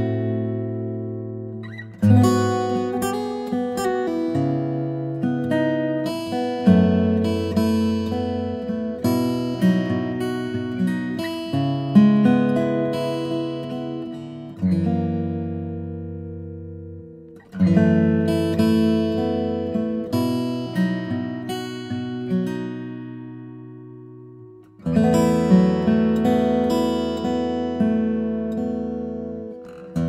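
Steel-string acoustic guitar played fingerstyle: a plucked melody over sustained bass notes, in phrases that ring and fade away. Fresh, louder phrases begin about 2, 17 and 25 seconds in.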